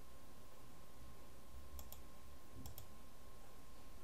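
Faint computer mouse clicks, two quick double clicks about a second apart in the middle, over quiet room tone with a faint steady high hum.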